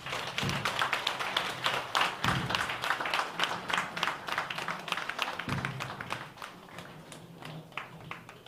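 A crowd of people clapping, a dense run of hand claps that thins out after about six seconds, with a few low thuds.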